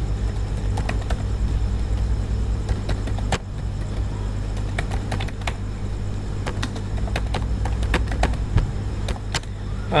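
Computer keyboard typing: irregular, quick keystroke clicks over a steady low hum.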